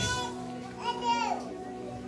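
A soft, steady held chord of background music, likely from an electronic keyboard, with a child's high-pitched voice calling out briefly about a second in.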